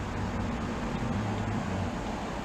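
Steady low hum with an even hiss underneath, with no distinct knocks or clicks standing out.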